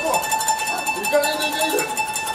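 A steady high held note sounding under a person's voice, with the voice's pitch moving and breaking off.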